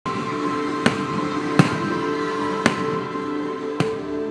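Four sharp firework bangs about a second apart, the second the loudest, over background music of held notes.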